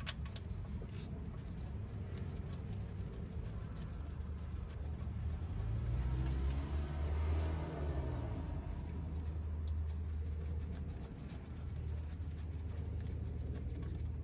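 Faint small clicks and scrapes of mounting screws being threaded in by hand in a car's engine bay, over a steady low hum; a low rumble swells and fades in the middle.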